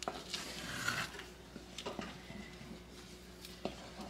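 Wooden spoon stirring a thick, sticky peanut butter and marshmallow fudge mixture in an enamelled cast-iron pot: faint soft squelching with a few light taps of the spoon against the pot.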